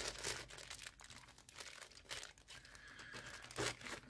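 Clear plastic bag of spare scope-mount hardware crinkling as it is handled, in short faint rustles with a slightly louder one near the end.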